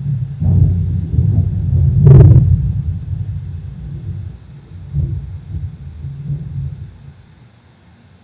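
Irregular low rumbling and bumps from a hand pressing and moving on the circuit board and bench, loudest in a thump about two seconds in, then fading out as the hand stays still and is lifted away.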